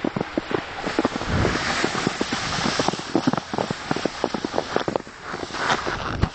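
Footsteps crunching in snow, an irregular run of crisp crunches, with wind buffeting the microphone.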